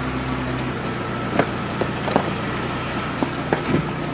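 Steady vehicle and street noise around a parked van, with several short knocks and bumps as people are bundled in through its side door. A low hum cuts off under a second in.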